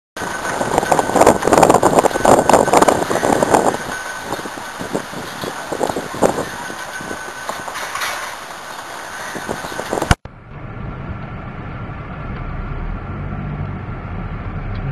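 Loud, gusty wind noise with a flag flapping, strongest in the first few seconds. About ten seconds in it cuts off suddenly and gives way to a steady low car engine and road hum heard from inside the cabin.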